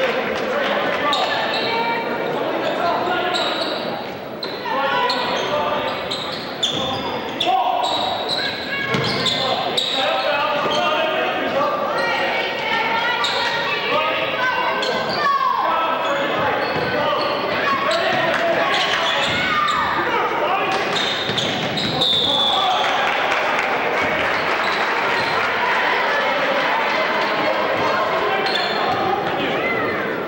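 Basketball bouncing on a hardwood gym court during play, with voices echoing in the large gym throughout.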